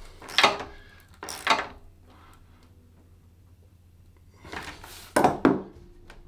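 Metal wrench clinking and scraping on the bolts of a steel workbench-leg foot plate as it is tightened down to the floor: two short bursts early, a pause, then three more near the end.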